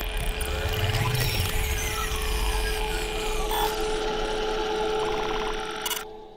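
Logo-sting sound effects for an animated outro: a steady, dense mechanical whirring like a power tool, over a held tone. It shifts about three and a half seconds in and drops away sharply at the end as the logo lands.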